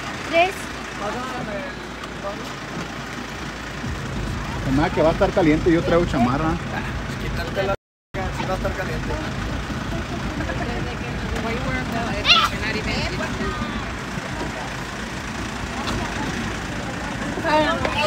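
A passenger van's engine idling steadily, with snatches of conversation over it.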